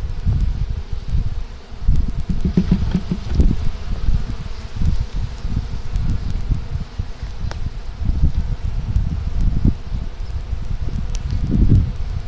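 Wind buffeting the microphone in uneven low gusts, over a faint steady hum of honeybees swarming on the frames of an open hive.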